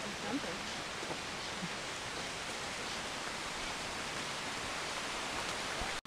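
Steady, even hiss of tropical forest ambience on a trail, with a faint voice or two briefly near the start.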